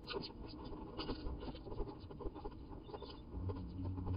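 Rapid, irregular scratching and clicking of twigs and a wren's feet on the wooden floor of a nest box as the bird brings in and places nesting material.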